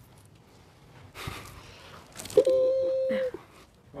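A woman's breathy intake of breath, then a held, high 'ooh' for about a second: the patient's vocal reaction just after a bone-setting neck adjustment is finished.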